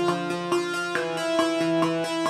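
Software synthesizer keyboard sound driven by Logic Pro's arpeggiator, playing a quick, even up-and-down run of notes over a short melody.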